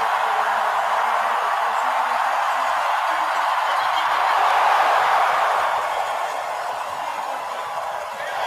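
Steady rushing hiss of ski-jumping skis running down the in-run track. It swells about four to five seconds in and eases off after the takeoff.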